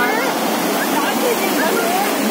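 Muddy floodwater of a rain-swollen stream rushing over a submerged causeway, a loud, steady rush of water, with voices over it.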